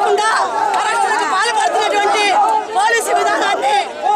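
Several women speaking loudly and at once in raised, high-pitched voices, with crowd chatter around them.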